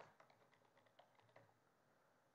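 A few faint computer keyboard keystrokes, typed at an irregular pace, over near silence.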